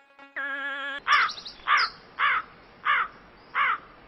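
Crow cawing five times, one call about every two-thirds of a second, after a brief wavering tone at the start.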